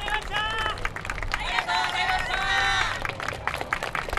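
A team of dancers shouting together in unison, a short call and then a longer one, as they finish and bow. Scattered sharp claps run underneath.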